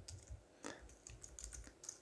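Faint computer keyboard typing: a scattering of separate keystrokes.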